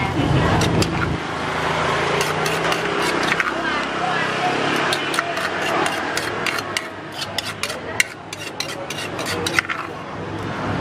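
Wooden pestle knocking in a clay mortar and a metal spoon scraping its sides as green papaya salad (som tum) is pounded and tossed. The knocks are sharp and irregular, coming more often in the second half, over a steady murmur of background voices.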